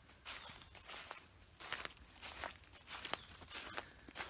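Footsteps walking over a layer of fallen leaves on the ground, about six evenly paced steps.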